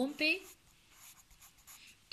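Faint scratching of a pen tip being drawn across a paper textbook page, after one brief spoken word.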